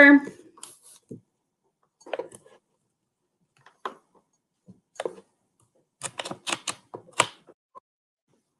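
Scattered clicks and taps of a computer keyboard and mouse, a few isolated ones and then a quick run of about six clicks near the end.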